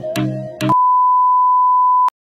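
Rhythmic background music with a beat cuts off suddenly under a second in. It gives way to a loud, steady, high-pitched test-tone beep, the single pure tone that goes with a colour-bar test card.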